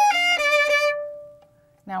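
Violin playing a quick run of bowed notes high on the neck, with a lower note sounding beneath them partway through. The last note rings on and fades out about a second and a half in.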